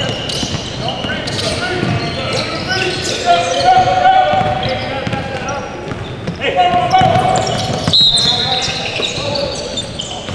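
Basketball game sounds echoing in a large gym: a ball bouncing on the hardwood court and players calling out over one another, with a short high-pitched squeak about eight seconds in.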